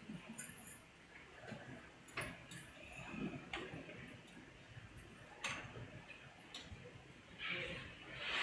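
Faint, scattered clicks and taps about a second or two apart, over quiet room tone.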